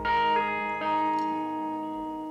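Live acoustic country-rock band music with no singing: ringing, bell-like notes struck twice, a little under a second apart, and left to sustain and fade.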